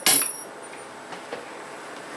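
A small metal key dropping and clinking as it hits the floor, one sharp clink right at the start; then quiet room tone with a couple of faint ticks.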